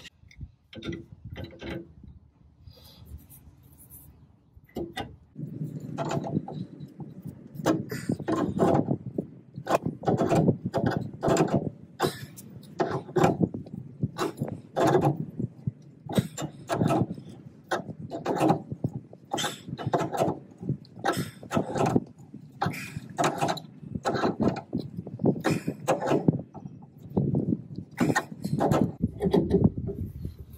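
Screw-type tie rod end puller on a VW Bus's front tie rod end being tightened with a hand tool. A few scattered clicks, then from about five seconds in a steady run of strokes about twice a second as the forcing screw is turned down to press the tie rod end's stud out of its taper.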